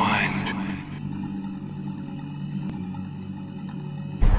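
A low steady hum made of a few sustained low tones, opening with a short rushing, sweeping sound in the first half second.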